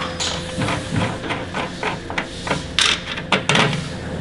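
Irregular metal clicks and knocks as the positive output terminal inside a Lincoln Power MIG 360MP welder is undone by hand, to change the lead polarity; the sharpest knocks come near the end.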